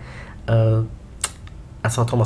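Two sharp clicks about half a second apart from the computer being worked, after a brief voiced sound from the narrator.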